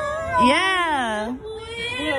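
A high voice singing, holding one long note that rises and then falls, with shorter high vocal sounds before and after it.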